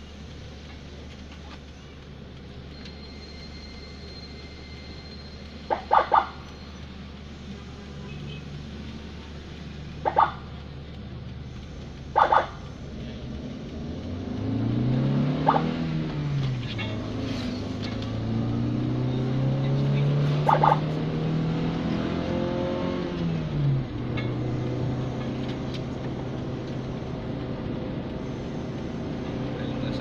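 Ambulance engine heard from inside the cab: a steady idle with three short, loud horn beeps about six, ten and twelve seconds in, then the engine revving up from about fourteen seconds, its pitch rising and dropping back at each gear change as the vehicle accelerates.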